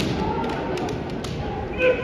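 Kendo bout: bamboo shinai knocking and bare feet thudding on a wooden gym floor. A sharp knock comes right at the start, lighter taps follow, and a short voiced shout comes near the end, over the steady murmur of a large hall.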